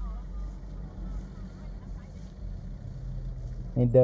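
Low, steady rumble of vehicle engines idling, with a faint high insect buzz over it.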